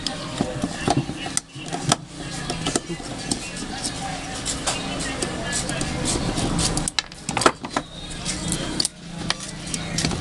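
Screwdriver working a terminal screw on a small electric fan motor: sharp metal clicks and scraping against a steady background. The loudest click comes near the end.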